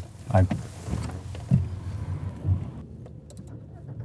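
Car running on the road, heard from inside the cabin as a steady low rumble with a few soft low thumps.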